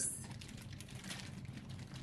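Faint crinkling and rustling of a thin plastic drawstring bag as it is handled and pulled open.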